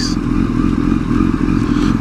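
Kawasaki ZX-10R's inline-four engine running at a steady low note as the bike rolls slowly in traffic, heard from a bike-mounted camera.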